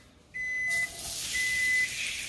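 Chopped onion dropped into hot butter in a cast-iron skillet, starting to sizzle about two-thirds of a second in and sizzling steadily after that. A high electronic beep repeats about once a second, each beep half a second long.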